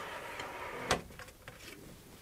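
Plastic extension table of a Bernette B38 sewing machine sliding over the free arm with a faint scrape, then a single click about a second in as it seats.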